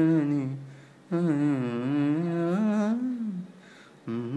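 A man humming a melody in two phrases, his pitch sliding between notes; the first phrase ends about a second in and the second trails off near the end.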